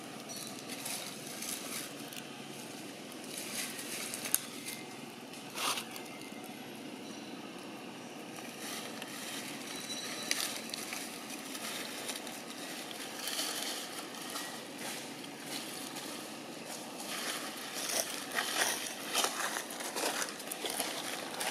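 Dry fallen leaves rustling and crackling as they are moved and pressed, over a steady outdoor hiss. There are sharp crackles about four and six seconds in, and a busier spell of rustling near the end.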